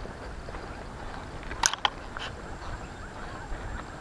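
Quiet, steady outdoor background noise with a few short, light clicks about one and a half to two seconds in.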